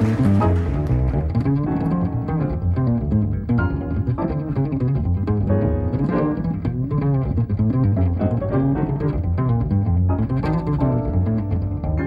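Upright double bass played pizzicato in a jazz solo line, a quick run of plucked notes with changing pitch. The brighter, fuller sound above it drops away about a second in, leaving the bass largely on its own.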